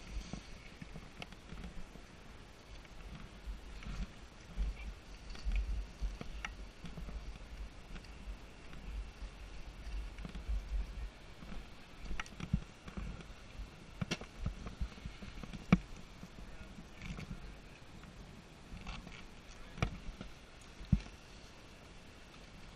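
Ski gear clicking and knocking as a skier shuffles in place, heard muffled through a body-worn action camera, with irregular low rumbling thumps. Several sharp knocks stand out, the loudest about two-thirds of the way in and again near the end.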